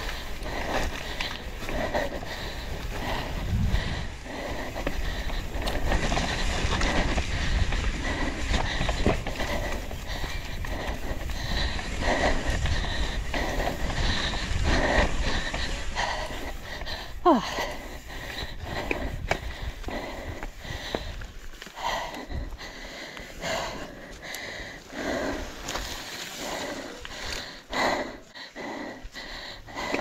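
Downhill mountain bike descending a muddy dirt track, heard from a rider-mounted camera: wind on the microphone, tyres on the dirt and the bike's irregular rattling knocks, with the rider breathing hard. A short falling squeal sounds a little past halfway.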